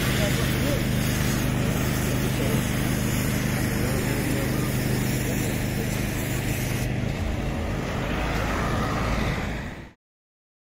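A fire engine's engine running steadily at the roadside, a constant low hum under a wash of hiss, with faint voices in the background. The sound shifts slightly about seven seconds in and fades out at the end.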